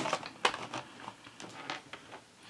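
Derwent Inktense coloured pencils being picked through: a few light clicks and rattles of pencil against pencil, the sharpest about half a second in, then fainter ticks fading away.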